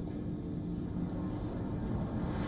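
Steady low rumble and hiss with a faint constant hum: the background noise of a live remote news feed during the delay before the correspondent replies.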